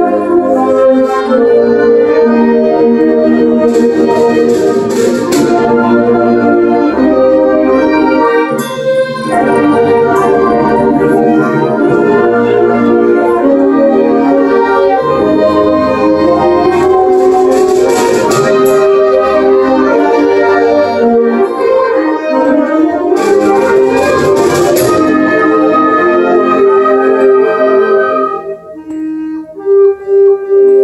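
School concert band of woodwinds, brass and percussion playing sustained chords, with three bright swells of noisy percussion about four, seventeen and twenty-three seconds in. The music drops quieter for a moment near the end before coming back in.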